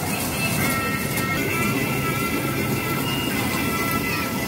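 Electronic jingle-style children's music from a mini kiddie train ride, in steady held notes, over the steady rumble of the ride running round its track.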